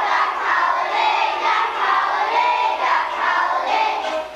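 Children's choir singing together, many young voices at once.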